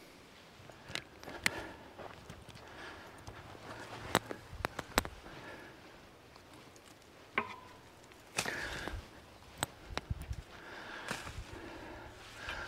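A rake scraping and knocking through a pile of loose soil, with footsteps on the dirt: quiet, irregular scrapes and sharp clicks.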